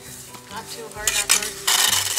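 Broom bristles sweeping across the paved monument surface in short scratchy strokes, faint at first and louder and closer together in the second half.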